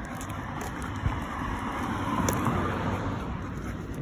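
A vehicle going by: a steady rushing noise that grows louder about midway, then eases off.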